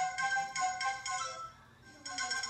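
Mobile phone ringtone playing a repeating electronic melody: an incoming call. It stops about one and a half seconds in and starts ringing again at the end.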